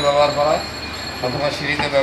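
A man's voice speaking, over a low steady hum and a faint steady high-pitched whine.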